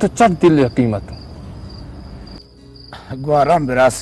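Crickets chirping steadily, a high, pulsing tone that runs on under bursts of spoken dialogue in the first second and again near the end.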